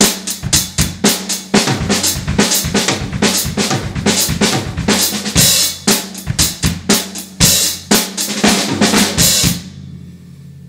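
Acoustic drum kit played at a fast tempo: snare and tom strokes mixed with bass-drum doubles in a right, left, kick, right, left, kick, kick seven-note pattern, with cymbal crashes. The playing stops suddenly near the end and the kit rings briefly.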